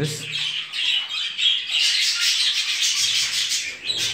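A flock of budgerigars chattering, a dense continuous stream of rapid high chirps and warbles.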